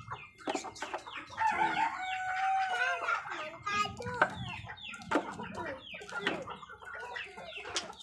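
Chickens clucking around the yard, with a rooster crowing once in a long call about a second and a half in.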